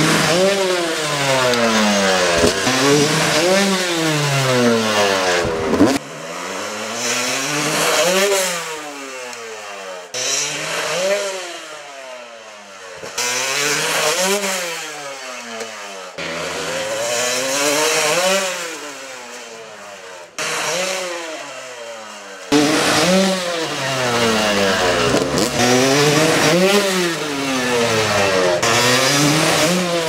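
Yamaha YZ250 two-stroke dirt bike engine revving up and dropping again and again, each rise and fall about a second long. The sound comes in separate clips that cut off abruptly every few seconds.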